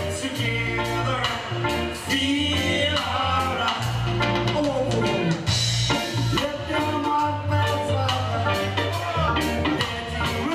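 Live band playing a song: electric guitars, bass guitar, drum kit and keyboard, with a woman singing lead vocals into a microphone.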